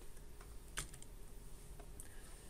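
A few faint clicks on a computer as the slide is advanced, the clearest a little under a second in, over quiet room tone.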